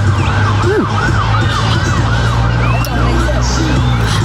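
Ambulance siren in a fast yelp, its pitch rising and falling about three times a second, the sweeps fading out near the end. A steady low rumble runs underneath.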